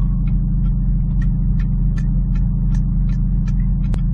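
Steady low rumble of a car's engine and road noise, heard from inside the cabin while driving.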